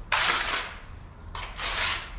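Notched steel trowel scraping and combing tile adhesive across the floor in two long strokes, a bit over a second apart.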